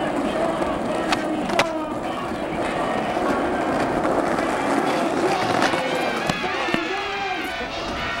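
Skateboard wheels rolling on pavement, with several sharp clacks of the board. Voices talk over the rolling.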